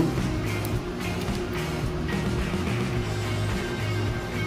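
Background music at a steady level, with no voice over it.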